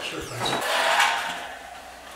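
A building's metal-framed entrance door clicking at the latch, then scraping and rushing as it is pushed open for about a second before fading.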